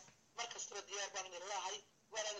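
A person speaking for about a second and a half, after a brief pause, with a thin telephone-like sound.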